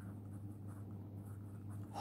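Pen writing on a sheet of paper: faint, short scratching strokes as a word is written, over a low steady hum.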